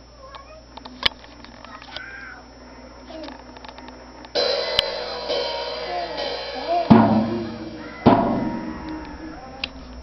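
A toddler playing a Ludwig drum kit: a few light taps at first, then, about four seconds in, a cymbal struck and left ringing, with two heavier drum hits a little later.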